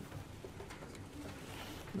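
Quiet room tone picked up by a lecture microphone, with a few faint clicks and a short, low hum about a second in.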